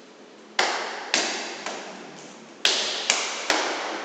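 Sharp smacks of pencak silat strikes and blocks landing between two sparring fighters: two loud cracks, a couple of softer ones, then three more in quick succession. Each one echoes off the hard tiled walls and floor.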